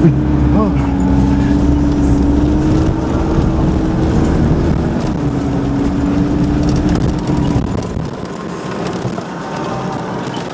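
A 4x4's engine heard from inside the cab, running under steady throttle with a steady pitch. A short laugh comes just after the start, and the engine note and its rumble drop away about eight seconds in.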